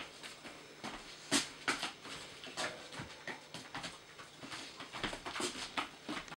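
Irregular light taps, clicks and scuffs of a puppy's paws and claws on a smooth hard floor as she trots and jumps up. The woman's boot steps mix in, with one sharper knock about a second and a half in.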